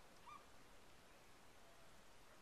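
Near silence with a faint steady hiss, broken by one short, faint waterbird call about a third of a second in.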